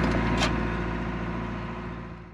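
A small boat's engine running steadily, fading out toward the end, with one short sharp click about half a second in.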